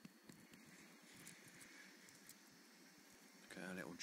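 Near silence: quiet room tone with a few faint ticks, then a person's voice starting near the end.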